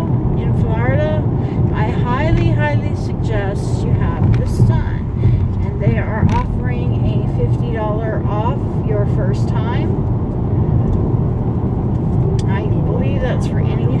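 A woman talking over the steady low rumble of road and engine noise inside a moving car's cabin.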